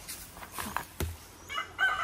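A rooster starts crowing about one and a half seconds in, a pitched call that is still going at the end. Just before it, about a second in, there is a single sharp knock.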